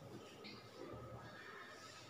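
Faint, indistinct voices over quiet room noise, close to near silence.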